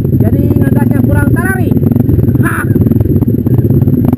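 Several trail motorcycles running at low revs, crawling along a rough track. Voices call out over the engines, with a short, sharp cry about two and a half seconds in.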